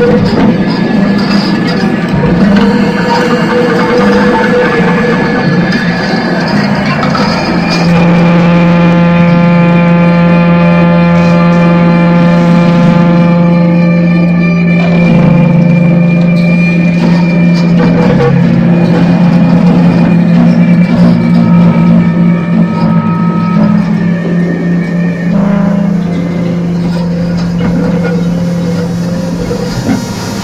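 Live electronic noise music: a dense, churning wall of noise, then from about eight seconds in a loud, steady low drone with many overtones, shifting pitch slightly a couple of times and holding to the end.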